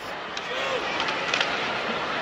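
Steady crowd murmur in a hockey arena, with a brief distant voice and a couple of faint clicks.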